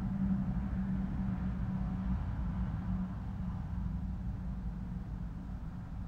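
A steady low hum, its pitched drone fading after about three seconds.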